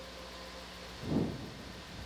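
Steady low hum and hiss of background noise, with one short low voice sound, like a brief murmur, about a second in.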